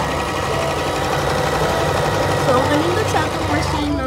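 Brother electric sewing machine running steadily, its needle stitching a zigzag stitch through denim with a fast, even clatter over the motor's hum. A voice is heard behind it in the second half.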